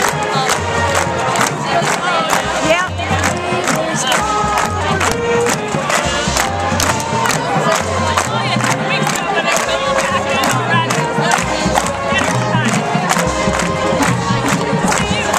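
High school marching band playing, with drums striking a steady beat about twice a second under sustained low brass notes, and a stadium crowd talking and cheering.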